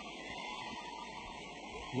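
Faint, steady background noise: an even hiss with no distinct knocks, calls or other events.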